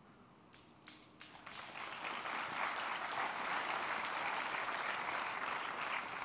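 Audience applauding: a few scattered claps about a second in, swelling into steady applause.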